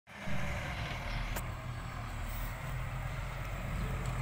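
Hydraulic excavator's diesel engine running steadily while it digs a trench, a constant low hum.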